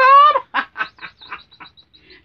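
A woman laughing in short bursts that die away, over faint high chirping from sound-activated toy birds in a decorative cage.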